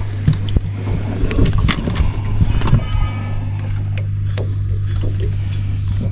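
Boat motor running with a steady low hum, with scattered small clicks and knocks from handling on the boat.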